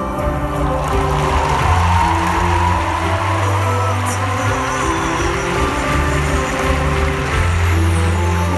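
Live band playing a slow ballad passage, with held bass notes and sustained keyboard-like chords and no lead vocal, heard from far back in a large concert hall.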